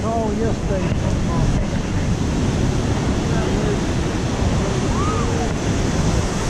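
Ocean surf breaking and washing below the pier, with wind buffeting the microphone.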